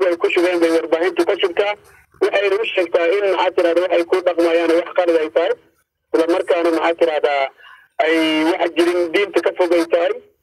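Speech only: a man talking in Somali over a telephone line, the voice narrow in range, in phrases broken by brief pauses.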